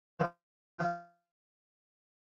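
Two brief fragments of a man's voice, hesitation sounds like "eh", each cut off abruptly, with dead silence between and after them.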